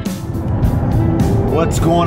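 Inside the cabin of a moving Dodge Charger Scat Pack: a steady low rumble from its 6.4-litre V8 and the road. A piece of guitar music cuts off right at the start, and other music or a voice comes in over the rumble about halfway through.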